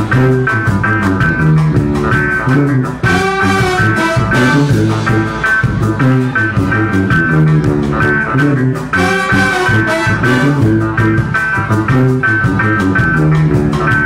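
Live band playing an instrumental passage with trombones and other brass horns, drum kit and violin over a steady beat.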